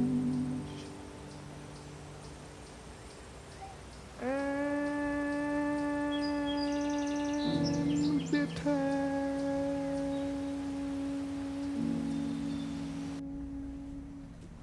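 Slow, mournful soundtrack music: a low sustained drone, joined about four seconds in by a long held humming note. The note shifts pitch briefly around eight seconds, then holds again and fades near the end.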